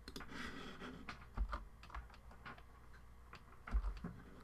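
Computer keyboard being typed on, a run of irregular key clicks, with two low thumps, one about one and a half seconds in and one near the end.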